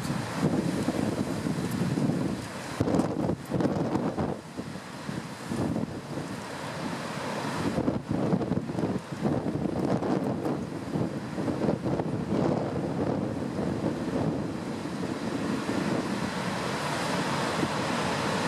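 Heavy ocean surf breaking and rushing around rocks, a continuous surging roar that swells and ebbs, mixed with gusting wind buffeting the microphone.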